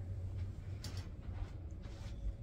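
Faint handling of glossy photo prints, a few soft paper rustles, over a steady low hum.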